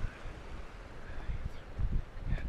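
Wind buffeting the microphone in irregular low rumbling gusts, strongest just before the end, over a faint steady hiss.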